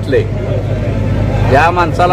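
A man's voice speaking, broken by a pause of about a second, over a steady low rumble.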